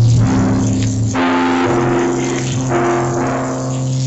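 Slow, sustained chords on a church keyboard instrument. Each chord holds steady for a second or so before changing to the next.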